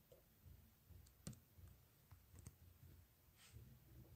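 Near silence: room tone with a few faint, short clicks, the clearest about a second in and again about two and a half seconds in.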